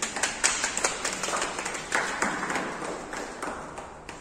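Small audience clapping: many quick, overlapping hand claps that start at once and gradually die down.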